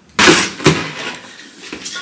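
Cardboard box and its packaging being handled and rummaged through. There are a couple of sharp rustles or knocks about a quarter and three quarters of a second in, then softer rustling that fades off.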